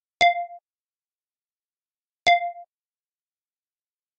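Computer alert chime: a short, bell-like ding that rings briefly and fades, sounded twice about two seconds apart.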